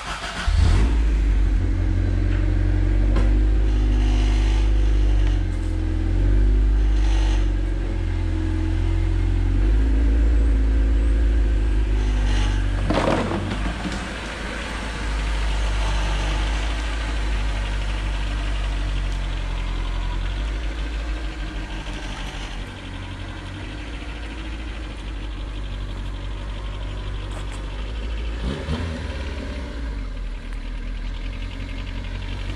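Honda CRX's small four-cylinder engine running, its pitch stepping up and down a few times in the first half like light revving, then settling to a quieter, steadier run. A short, sharper noise cuts across it near the middle.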